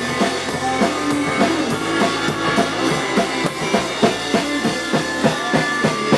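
A small rock band playing live: electric guitar and electric bass through amplifiers, with a drum kit keeping a steady beat.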